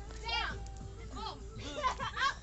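Children's voices calling out in short, high-pitched cries, several in quick succession, over a low steady hum.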